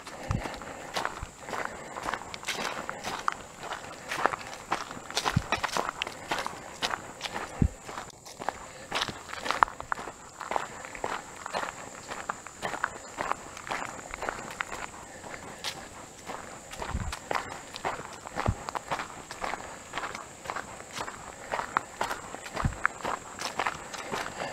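Footsteps of a person walking at a steady pace on a dirt forest track strewn with leaves and grass.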